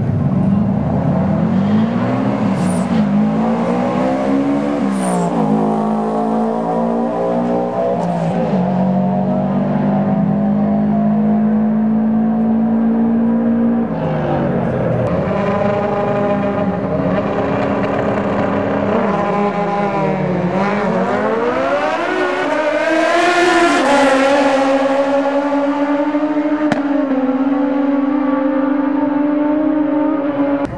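Drag racing engines revved hard at the start line, swooping up and down and held at high, steady revs for several seconds at a time. About two-thirds through comes a louder climbing run.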